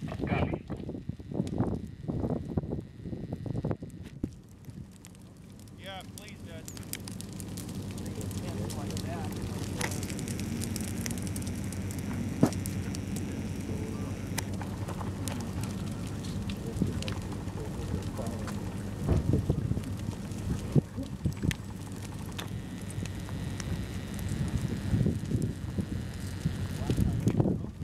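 Dry grass burning in a prescribed burn, crackling and hissing. After a brief lull a few seconds in, the crackle builds up and then holds steady, with frequent sharp pops.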